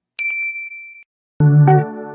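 A single bright bell ding, a notification-bell sound effect, rings on one pitch and fades out within about a second. About a second and a half in, keyboard music with electric-piano chords starts.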